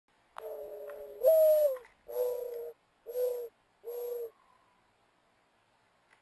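Mourning dove giving its cooing call. A drawn-out first coo is followed by a louder second coo that rises in pitch and then slides down. Three shorter, lower coos close the call.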